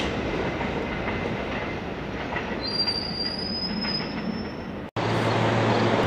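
New York City subway B train of R68-type cars running along the rails with steady wheel noise, and a thin, high wheel squeal that rises slightly in pitch for about two seconds midway. Near the end the sound cuts off abruptly and is followed by a steady low hum.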